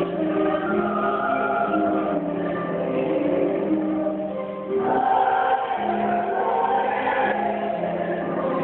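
Mixed church choir singing slow, sustained phrases; one phrase ends and a louder one begins about five seconds in.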